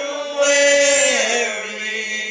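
Two men singing a gospel song together, holding long, drawn-out notes.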